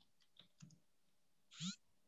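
Near silence with a few faint computer keyboard clicks as a word is typed, and one brief faint sound about one and a half seconds in.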